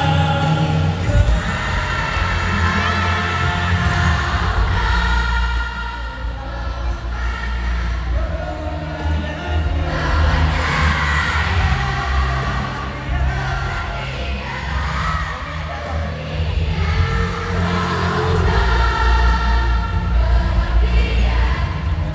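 Live amplified music: a man singing into a microphone over backing with strong, steady bass, with crowd noise underneath.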